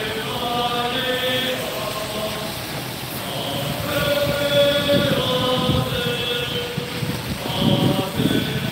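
A group of people singing together in long, held notes. Car tyres hiss past on the rain-wet street, loudest about four to six seconds in and again near the end.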